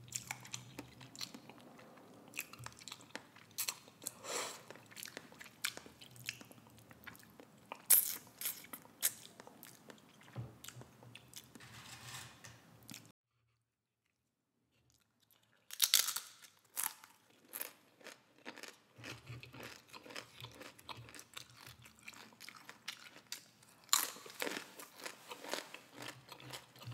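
Close-miked chewing and wet mouth sounds of someone eating instant cup noodles, with a run of irregular crunchy bites and clicks. The sound cuts out completely for about two and a half seconds midway, then the chewing resumes.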